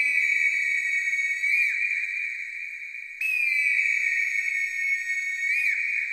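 A small hand-held whistle blown in two long, high, steady notes, each about three seconds. Each note ends with a brief dip and wobble in pitch, and the second note starts about three seconds in.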